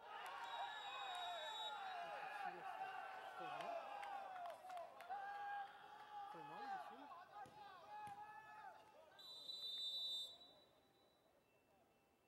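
Footballers shouting over one another on the pitch, with a referee's whistle blown in two long blasts, one at the start and a louder one near the end, after which the shouting stops.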